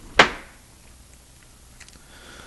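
A single sharp knock just after the start, with a brief ring-out.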